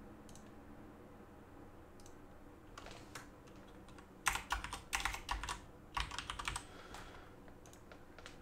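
Typing on a computer keyboard: several short bursts of keystrokes, starting about three seconds in, as a file name is typed.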